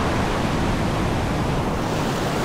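Sea surf: waves breaking and foam washing over the shallows in a steady, even rush.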